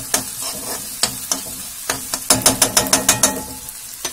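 Chopped onions and green chillies sizzling in oil in a kadhai as they are sautéed, while a metal spatula stirs and scrapes against the pan. The scraping clicks come thick and fast for about a second in the second half.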